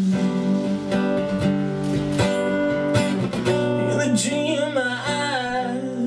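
Acoustic guitar strummed, with a man singing over it; in the second half the voice glides through a wordless run of notes.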